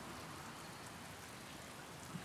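Faint steady background hiss: room tone, with no distinct events.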